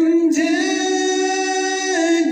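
A man singing an Urdu naat, a devotional poem in praise of the Prophet, unaccompanied into a microphone. Near the start he moves into one long held note that lasts to the end.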